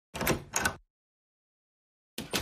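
Cartoon sound effect of a door opening: two short sounds in quick succession within the first second.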